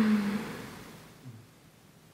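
A woman's soft hummed "mm" that trails off within the first half second, then near silence: room tone.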